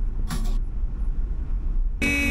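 Car driving, heard from inside the cabin: a steady low rumble of road and engine noise, with a short hiss about a third of a second in.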